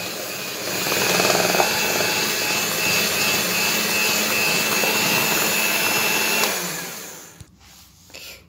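Electric hand mixer beating cake batter until light, running steadily with a high whine, then switched off and winding down near the end.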